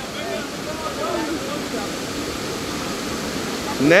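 Steady rush of a waterfall and river, with faint voices of people chatting in the background.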